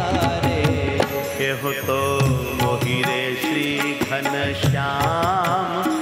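A male voice singing a Gujarati devotional kirtan in a gliding, ornamented melody, over steady rhythmic percussion and instrumental accompaniment.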